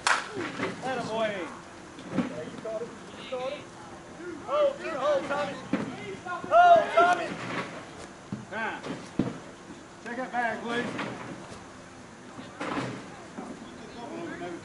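Players shouting and calling out across a slowpitch softball field, in bursts throughout, loudest about halfway through. It opens with a sharp crack, and there is a smaller knock about nine seconds in.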